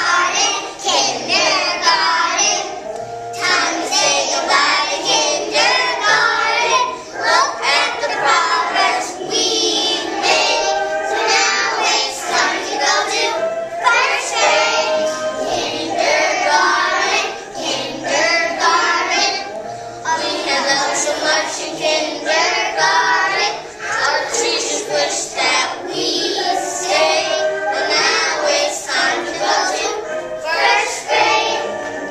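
A class of kindergarten children singing a song together in unison.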